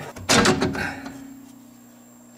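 Sheet-metal cover of a power-system breaker box being pulled off with a sudden clatter about a quarter second in, fading within a second. A low steady hum runs underneath.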